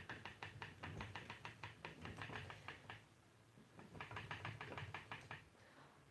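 Treadle spinning wheel running as flax is spun, giving a faint, rapid, even ticking from its moving parts. The ticking breaks off about halfway through, picks up again briefly, and stops about a second before the end.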